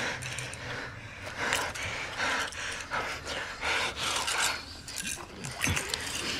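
Quick, heavy breathing: short sharp breaths in and out, about one every two thirds of a second.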